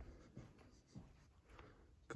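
Near silence, with faint footsteps and scuffs roughly every half second.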